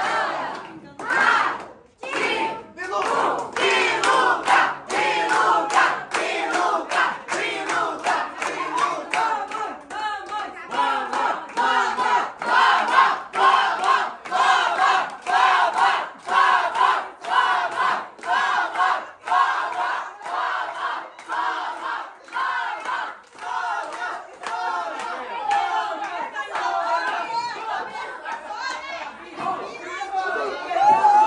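A group of family voices singing a birthday song together, with steady rhythmic hand clapping at about two claps a second.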